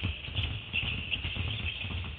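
Several basketballs dribbled at once on a hardwood court, a busy, overlapping run of bounces with no steady beat, echoing in a large gym.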